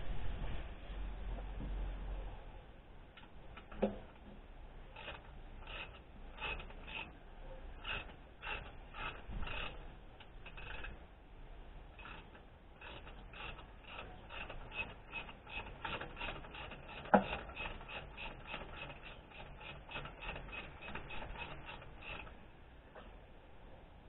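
Socket ratchet clicking as it undoes a bolt on an A/C compressor bracket. The clicks come in short irregular runs at first and then steady, about three a second, through the second half. A sharp metal knock about 4 s in and a louder one about three-quarters of the way through stand out.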